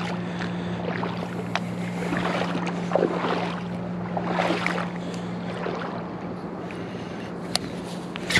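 Lakeside ambience: a steady low hum with faint water sounds and a few light clicks near the end.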